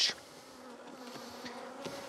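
Honeybees buzzing over an open nucleus hive: a soft, steady hum that grows slightly louder.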